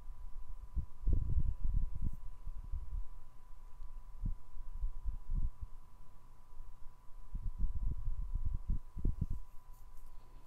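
Soft, irregular low thumps and rumbles of a hand and paintbrush working on a canvas laid flat on a table. They come in clusters about a second in, around the middle, and in a busier run near the end, over a faint steady high-pitched tone.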